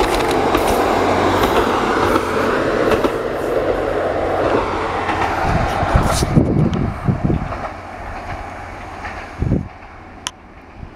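KiHa 40 diesel railcar passing close by, its engine and wheels on the rails loud at first and then fading as it moves away, with wheels clacking over the rail joints. A few low thumps come in the second half.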